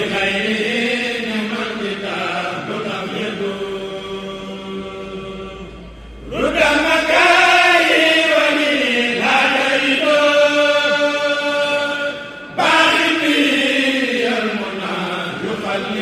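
Men's voices chanting a Mouride khassida (religious poem) with no instruments, in long melismatic phrases with held, wavering notes. The phrases break off briefly about six seconds and twelve and a half seconds in, and a new phrase begins each time.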